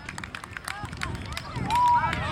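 Young players' voices calling out on a football pitch, with one high shout near the end, the loudest part, over a scatter of short sharp clicks and knocks.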